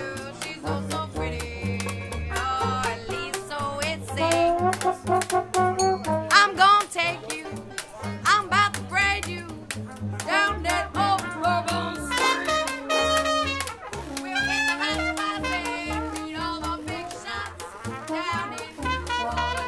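A small street jazz band playing live: trombone over a pulsing bass line and steady percussive clicks, with a woman singing; the trombone or voice holds long notes in the second half.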